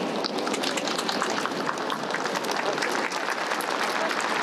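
A crowd clapping steadily, many hands applauding at once.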